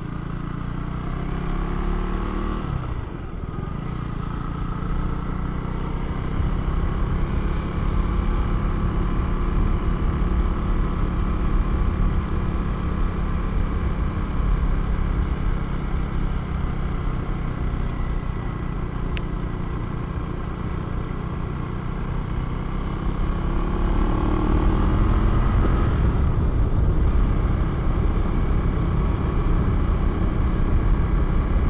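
Husqvarna Svartpilen 401's 399cc single-cylinder engine running under way, with wind noise. The engine note drops about two to three seconds in, runs steady, then climbs again near the end as the bike speeds up.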